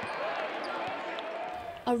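Live sound of a college basketball game in an arena. A crowd murmurs steadily, and a basketball is being dribbled on the hardwood court.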